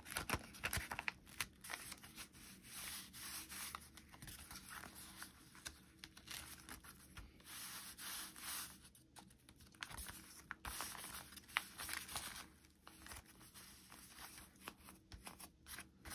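Faint, irregular rustling and rubbing of paper envelopes as hands turn them over and smooth them flat against a tabletop.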